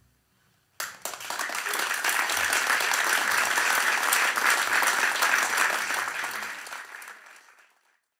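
Audience applause in a concert hall: after a moment of near quiet, many people start clapping together just under a second in, the applause holds steady, then fades away near the end.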